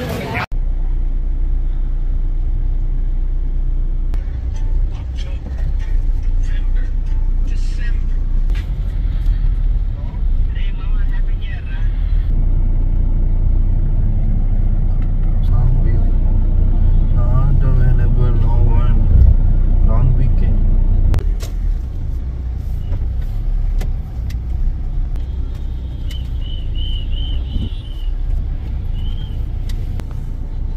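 Steady low rumble of a car's engine and road noise heard from inside the cabin while creeping in heavy traffic, with a few short high beeps near the end.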